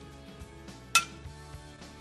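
Faint background music with a single sharp, ringing clink of glass about a second in.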